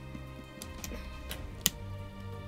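Plastic Lego pieces clicking and scraping as a truck's tank part is pressed onto its pins, with one sharp click a little after halfway. Faint music runs underneath.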